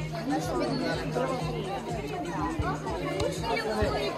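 Several voices chattering at once, with music playing in the background.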